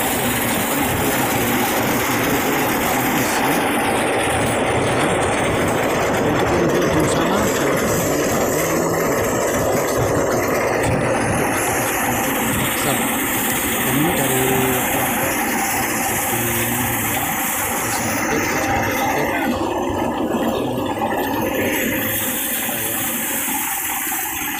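Motorised rice thresher running steadily: its engine and threshing drum make a loud continuous mechanical noise while threshed grain streams out of its outlet.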